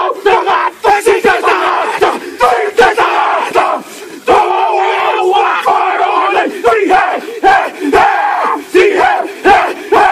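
A group of men performing a haka, shouting the chant together in loud unison, punctuated by many sharp body slaps. There is a brief lull about four seconds in before the chant comes back in full force.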